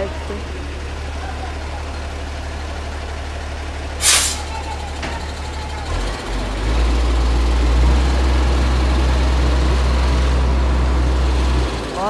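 Dump truck's diesel engine idling with its tipper bed raised, with a short sharp air hiss about four seconds in. Halfway through, the engine runs louder and deeper for about five seconds, then drops back to idle.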